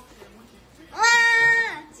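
A single high, drawn-out voice-like call held on one steady pitch for nearly a second, starting about a second in.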